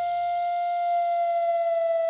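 A single long note held on an electronic keyboard's lead voice, steady in pitch, while the lower accompanying chords fade out in the first half second.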